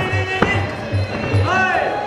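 Traditional Muay Thai fight music (sarama): a steady drum beat of about two and a half beats a second under a wailing reed pipe whose notes bend up and down. A single sharp smack comes a little under half a second in.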